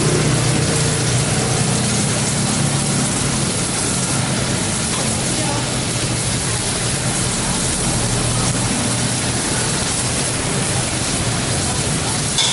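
Shrimp, yardlong beans and green chilies sizzling in a hot wok: a steady hiss with a low rumble underneath.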